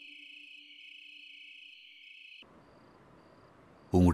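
Night ambience of crickets trilling steadily, over a faint low held tone that fades about two seconds in. About two and a half seconds in, the trill cuts off to quieter room tone with a few faint, short chirps.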